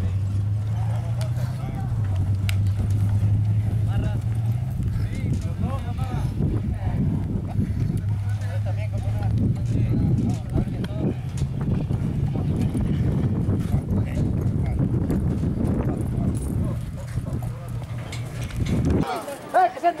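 Race horses walking on a dirt track, their hoofbeats soft among murmuring voices, over a steady low hum that stops abruptly near the end.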